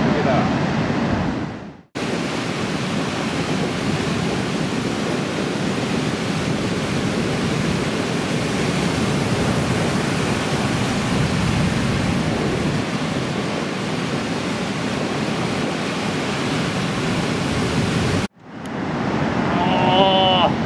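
Steady roar of breaking surf. It cuts out sharply about two seconds in and comes straight back, then cuts out again near the end and swells back up.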